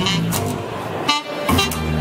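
ROLI Seaboard played live through a synthesizer: sustained chords with short pitch slides, broken by a brief gap just after a second in.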